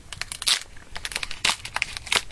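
Foil booster-pack wrapper crinkling and crackling in the hands as it is carefully worked open, a run of irregular small crackles with two louder ones.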